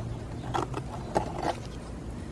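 Scissors snipping through a thin cardboard box: a few short, sharp cuts.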